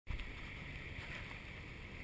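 Steady rush of water along the hull and wind from a sailboat under way at sea, with a low steady engine drone beneath: the boat is motor sailing.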